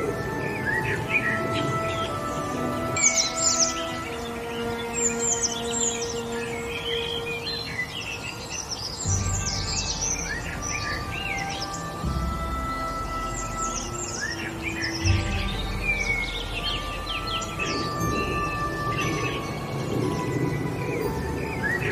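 Calm ambient music of long held notes layered with birdsong: many quick chirps and trills. A deep bass note comes in about nine seconds in.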